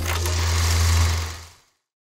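Logo sting sound effect: a noisy rush over a steady low hum, with a short hit a quarter-second in, fading out after about a second and a half.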